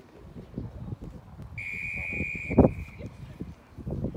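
A referee's whistle blows one long, steady blast of about a second, starting about a second and a half in, with a loud thump as it ends. A low rumble runs underneath.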